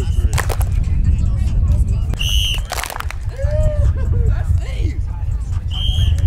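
Short, shrill coach's whistle blasts, one about two seconds in and another at the end, over scattered kids' shouts and a constant low rumble.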